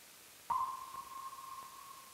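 A single bell-like ping at one steady pitch, struck about half a second in and ringing away over about a second and a half, over a faint steady hiss.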